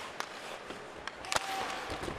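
Ice hockey arena crowd noise during live play, with two sharp knocks of stick or puck about a second apart.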